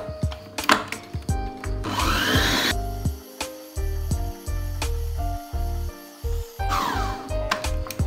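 PerySmith stand mixer running, its beater whipping a cream cheese and cream mixture until it thickens, under background music with a rhythmic bass beat.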